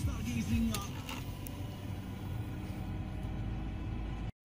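Car engine idling, heard from inside the cabin as a steady low hum, with a few faint voices and light clicks in the first second or so.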